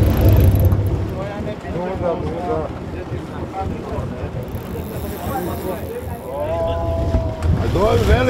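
A sport-fishing boat's engine running at idle: a low, steady rumble that eases off in the middle and grows louder again near the end.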